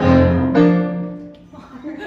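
Piano chords: one struck at the start and a second about half a second in, both ringing and fading away within about a second and a half.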